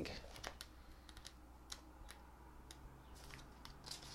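Faint, scattered paper clicks and rustles from a card and a small paper guidebook being handled and leafed through, over a low steady room hum.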